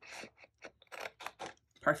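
Large scissors cutting through cardstock: a short cut at the start, then a run of quick clicking snips of the blades as the flap is cut away.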